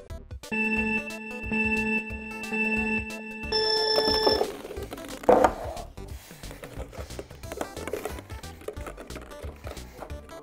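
Electronic countdown beeps: three lower beeps about a second apart, then a higher start beep. A loud clatter follows as plastic balls are tipped out of a clear plastic cube onto a table, then lighter knocks of plastic balls handled and dropped back into the cubes.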